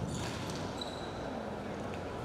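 Squash rally: a few sharp hits of the ball off rackets and walls, and a short squeal of court shoes on the wooden floor, over the steady noise of the hall.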